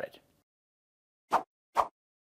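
Two quick pop sound effects, about half a second apart, set into otherwise dead silence as a title card animates in.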